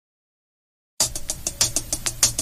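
Silence for about a second, then a late-1980s hip hop drum-machine beat starts playing from a 12-inch vinyl record: rapid sharp ticks over a steady low bass.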